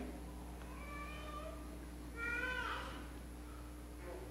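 Two faint, high-pitched cries from off the microphone, about a second in and again after two seconds, the second falling in pitch at its end.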